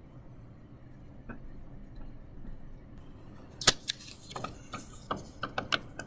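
Fingers pressing and tapping a small piece of polymer clay on a plastic transparency sheet on a tabletop. It is quiet at first, then a sharp click comes a little past halfway, followed by several lighter clicks and taps.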